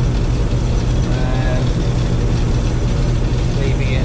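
Combine harvester running steadily, heard from inside its cab: a constant low drone of the engine and machinery.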